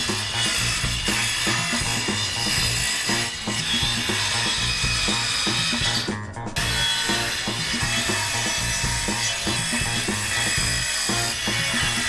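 Background music with a steady beat and stepping bass line, mixed with a Bosch 18V cordless circular saw running and cutting through old reclaimed timber.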